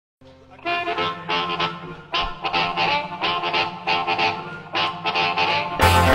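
Amplified blues harmonica, cupped against a microphone, playing a phrased intro of held and bending notes over a low sustained bass note. The full band, drums included, comes in just before the end.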